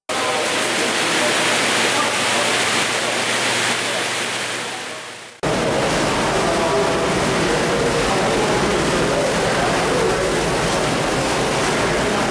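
Steady rushing of water moving through a treatment plant's open filter basins and weirs, fading out about five seconds in. After a sudden cut, the low hum of plant machinery in a pipe gallery takes over, with people murmuring faintly.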